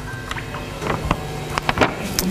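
Lecture-hall room noise: a steady low hum, with a handful of short clicks and knocks in the second half.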